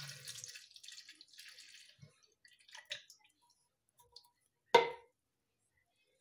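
Evaporated milk pouring from a can into a plastic blender jar: a soft stream of liquid splashing for the first two seconds or so. Then a few faint small sounds, and a single sharp knock near the end.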